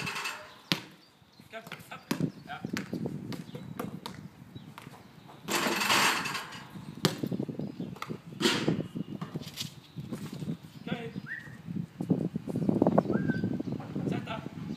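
Basketball bouncing on a concrete court and knocking off the backboard and rim as a dog chases it: a series of separate sharp knocks, with a short rush of noise about six seconds in.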